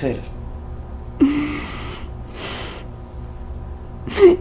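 A woman's short voiced gasp about a second in, then a hissing breath a second later, over a low steady hum.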